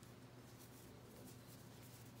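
Near silence: a steady low hum with a few faint rustles of cotton macrame cord being handled.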